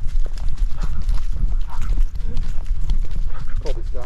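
A camera worn on a walking dog: a steady low rumble from its moving body and the mount, with a quick run of small clicks and taps from its steps through grass and dry leaves.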